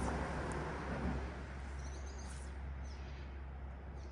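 Faint, steady outdoor background noise with a low hum, and a brief high chirp about halfway through.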